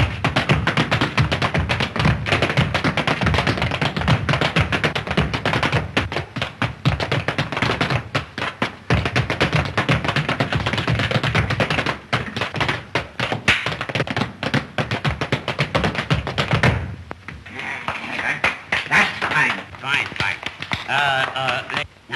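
Children's dance steps: a fast, dense run of foot taps and stamps for about seventeen seconds, stopping suddenly, followed by voices.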